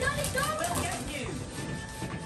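Indistinct voices over background music, from played-back media such as a video or TV programme.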